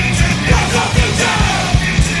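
Punk rock band playing live: a fast, steady drum beat and guitars, with the singer yelling the vocals over them.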